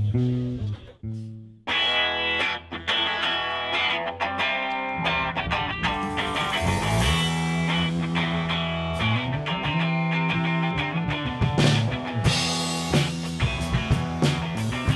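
Rock band playing live, with electric guitar, bass guitar and drum kit, in an instrumental song intro without vocals. After a short break about a second in, the full band comes in, and cymbals grow brighter near the end.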